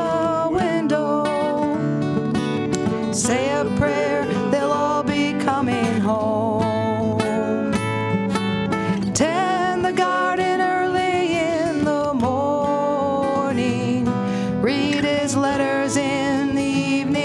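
Two acoustic guitars played together in a folk song, with a singing voice carrying the melody.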